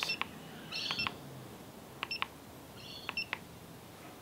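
Keypad beeps of a RedBack PL650 pipe laser: short, high electronic beeps, a couple about every second, as the buttons are pressed to step the grade setting up through the percent values.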